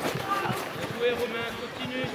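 Faint, distant voices calling out across an open sports pitch, with no clear words.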